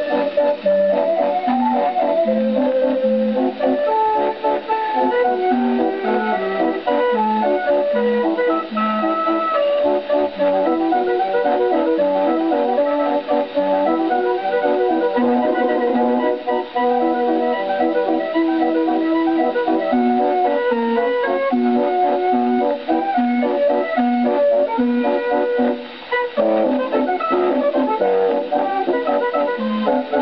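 A 1920s Odeon 78 rpm record of a Dutch street organ (draaiorgel) with vox humana and xylophone registers, playing a waltz on a gramophone. The organ sounds thin, with no deep bass and no high treble.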